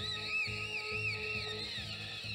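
Late-1960s rock music playing from a lacquer acetate record on a turntable. A high tone warbles up and down about three times a second over the music.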